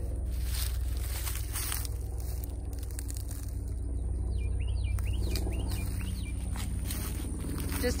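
Footsteps and rustling through brush and leaf litter, with a few faint bird chirps near the middle, over a steady low hum.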